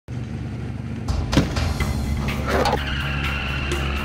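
Car sound effects mixed with music: a car engine with tyres squealing, the squeal a steady high tone from about three seconds in. There is a sharp hit about a second and a half in.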